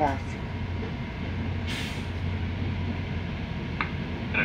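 Steady low rumble and hum of a GO Transit train rolling slowly, heard from inside the passenger coach, with a short burst of hiss about two seconds in.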